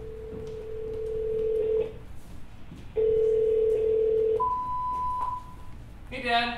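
Telephone ringback tone heard through a handset: two long, low tones, the second one cut short. A higher single beep follows it about four seconds in.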